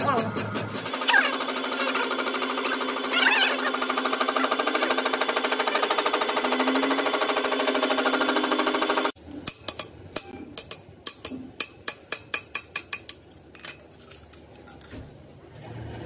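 Cylinder head resurfacing machine's cutter running across the deck face of a cast-iron V8 cylinder head, a steady dense whine with a couple of short rising swoops. It cuts off abruptly about nine seconds in, leaving a quieter run of sharp irregular clicks.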